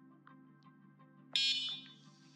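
A short, loud blast of a small electric horn, sounded from the horn button on a DK336 handlebar switch, about a second and a half in. It is high-pitched, fades over about half a second, and plays over background music.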